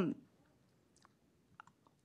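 A pause in speech, nearly silent, with a few faint, short clicks about a second in and again near the end.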